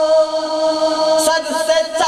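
A man's voice chanting a naat unaccompanied, holding one long steady note, then breaking off and starting the next phrase about a second and a half in.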